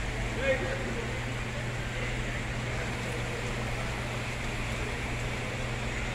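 Flash-flooded river rushing past, its water making a steady, even noise, with a steady low hum underneath. A faint voice is heard briefly about half a second in.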